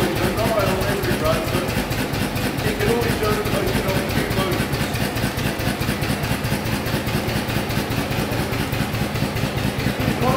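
Single-cylinder engine of a veteran car idling with a steady, even beat.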